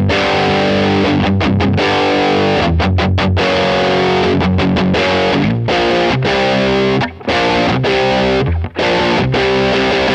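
Novo Solus F1 single-pickup electric guitar played through a high-gain distorted amp sound, riffing in sustained chords. The chords are cut short in a few brief choked stops, two deeper ones about seven and nine seconds in.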